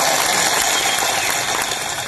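Crowd applauding, a dense patter of many hands clapping that fades a little near the end.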